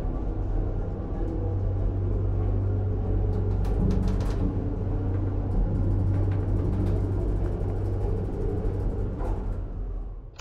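Background film score over a steady low rumble of an elevator car riding up, which stops at the end.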